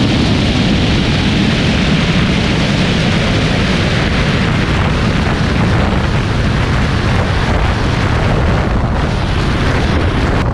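Loud, steady wind buffeting the microphone of a camera mounted on the outside of a car travelling at high speed during a roll race.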